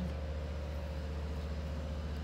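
A steady low hum with a faint, thin higher tone above it, unchanging throughout.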